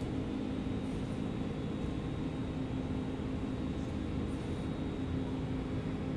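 A steady mechanical hum: a constant low drone with a low rumble beneath, unchanging throughout.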